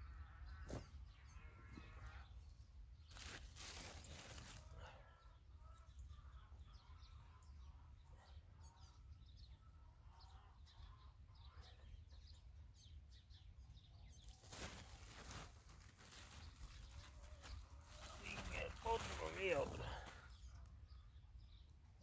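Mostly faint outdoor quiet. Soft rustles come as vine cuttings and loose soil are handled, with faint bird chirps, and a faint distant call near the end.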